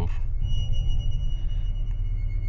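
Background music of dark, low droning, with a high ringing, sonar-like tone that enters about half a second in and holds for over a second.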